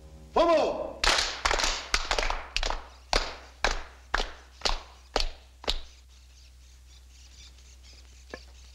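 A single shouted call, then a run of about a dozen sharp percussive strikes at roughly two a second, ending about six seconds in.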